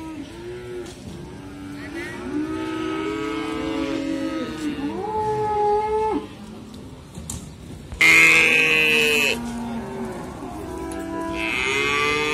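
Several cattle mooing, with long, arching calls that overlap one another. A louder moo breaks in about eight seconds in.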